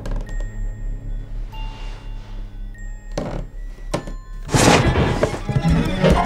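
Horror-film soundtrack: a low pulsing drone under sparse held notes, two heavy thuds about three and four seconds in, then a sudden loud crashing burst of noise from about four and a half seconds on.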